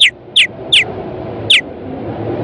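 Cartoon bird chirp sound effects: four short, sharply falling chirps spaced unevenly over a steady hiss.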